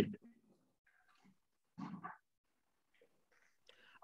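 A pause on a video call, mostly silent, with a few faint, brief sounds picked up by participants' microphones, the clearest about two seconds in.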